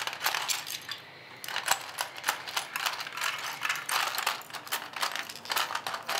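Plastic Lego bricks clattering and clicking against each other and the baseplates as hands rummage through a pile of them, in quick irregular clicks with a brief lull about a second in.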